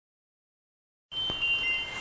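Silence for about the first second, then a faint hiss with several steady high ringing tones held together.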